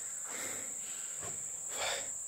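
Crickets trilling in one continuous high-pitched drone, with a few soft scuffs of movement about half a second, one and a quarter and near two seconds in.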